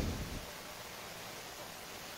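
Steady faint hiss of room tone and recording noise, with the tail of a man's voice fading out in the first half-second.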